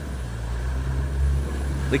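Land Rover Defender's engine running with a steady low drone as it wades through deep floodwater, the wash of water around it heard as a faint hiss.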